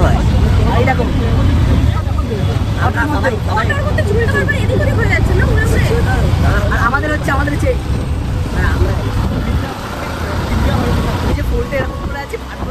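Steady low vehicle rumble under people talking.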